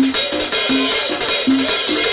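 Banda percussion playing a rhythm: a drum kit with cowbell and cymbals, and a bass drum with a cymbal on top, struck in time. Short low notes repeat between the strokes, about five in two seconds.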